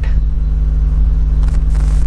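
A steady low hum with no change in pitch or level: continuous background room noise in a pause between words.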